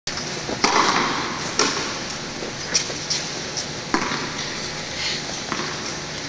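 Tennis balls being hit back and forth in a rally: sharp racket strikes and ball pops, roughly one every second, some louder and some fainter.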